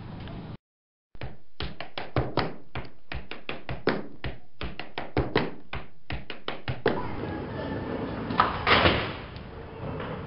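A quick, irregular run of sharp knocks and taps, about four a second, following a brief dropout, then steady noise with a louder crashing burst near the end.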